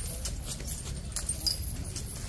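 Iron leg chains on a walking elephant clinking and jangling in short irregular clicks, over a low steady rumble.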